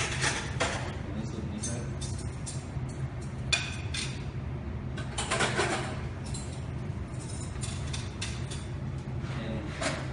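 Indistinct voices and background music, with about four short clatters of tableware being set down on a table.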